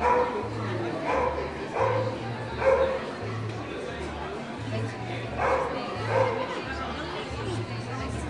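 A dog barking: four barks in the first three seconds, then two more a little past halfway.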